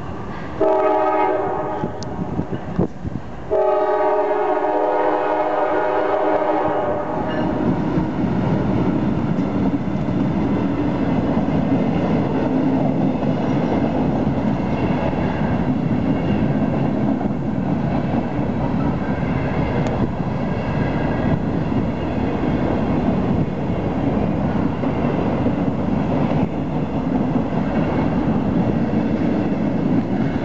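Norfolk Southern diesel freight locomotive's horn blowing twice for a grade crossing, a blast of about three seconds and then a longer one of about four. After it, the passing freight train makes a steady loud rumble.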